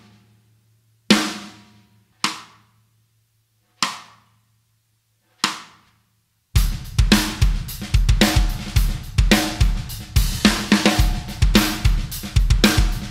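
Sonor Phonic D506 14x6.5" iron-manganese (steel-shell) snare drum at medium tuning, struck alone four times, each hit ringing out for about a second. About six and a half seconds in, a full drum-kit groove starts, with bass drum, snare, hi-hat and cymbals.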